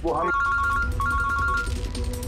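Mobile phone ringing with an electronic ringtone of two high tones together: two rings of under a second each, back to back, starting about a third of a second in.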